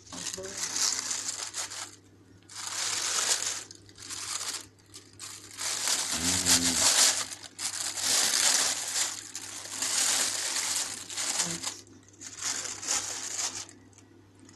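A plastic oven-roasting bag crinkling and rustling in about seven bursts as it is handled and opened by hand.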